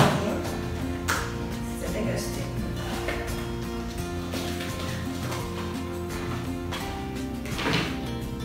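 Background music playing steadily, with a couple of brief clatters, about a second in and near the end, from items being handled inside a gift box.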